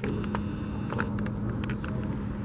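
Steady low hum of room background noise, with a few faint short clicks scattered through it.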